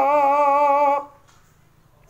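A man singing unaccompanied in Javanese, holding one long, high note with a slight vibrato that ends about a second in.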